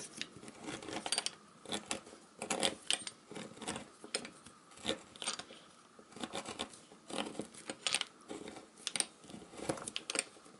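Twist bit in a hand-turned drill cutting a hole for wiring: uneven scraping, rasping strokes, several a second, with no motor sound.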